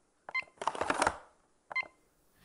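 Short electronic beeps and blips, like telephone keypad tones: a brief beep, a quick run of chirping tones, then one more beep near the end.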